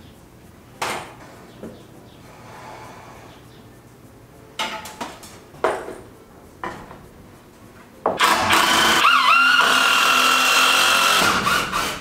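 A few wooden knocks as a two-by-ten board is lifted and set onto a beam, then from about eight seconds in a power drill running steadily, driving a four-inch screw into the lumber. Its whine dips in pitch once as it loads up.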